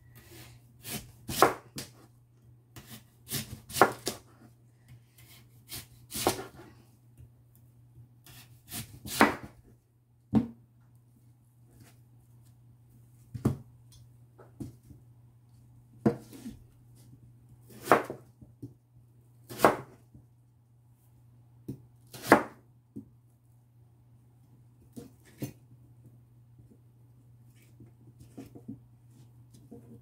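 Kitchen knife chopping through a large Korean radish into thick rounds and striking a plastic cutting board: sharp separate chops every second or two, some in quick pairs. A low steady hum runs underneath.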